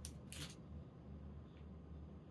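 Faint handling noise from small unboxing pieces being moved about: a click at the start and a short rustle about half a second in, over a low room hum.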